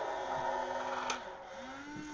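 Small electric motor and plastic gearbox of a Halloween animatronic vampire prop, whirring steadily as it moves, then stopping with a click about a second in as its animation cycle ends.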